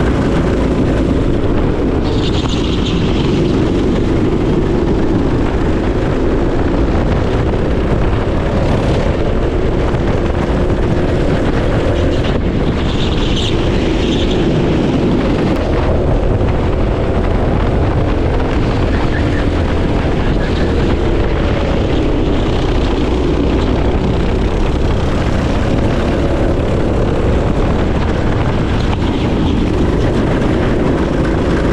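Onboard sound of a go-kart's small engine running hard at racing speed, its pitch rising and falling with the throttle through the corners, mixed with heavy wind noise on the camera microphone.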